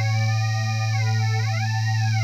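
Novation UltraNova synthesizer holding one low monophonic note while Knob 1 sweeps oscillator 3's virtual sync depth, so the upper overtones glide down and back up about halfway through while the low fundamental stays steady.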